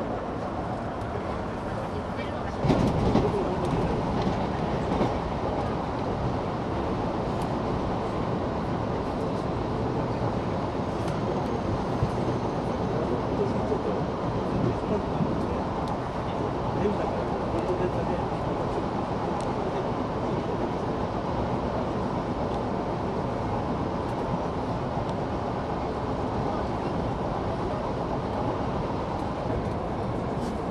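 Electric commuter train running at speed, heard from inside the carriage: a steady rumble of wheels on rail that grows louder about three seconds in.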